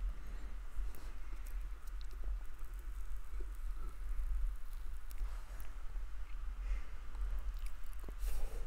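Faint clicks and rubbing from hands pressing a steel gouge tang, coated in two-part epoxy, into a wooden handle with a brass ferrule, over a steady low hum.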